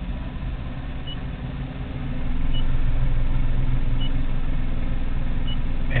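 Chevrolet S10 electric conversion's drivetrain running under throttle: a steady low hum that grows louder about two seconds in and then holds. Faint short high beeps sound about every second and a half.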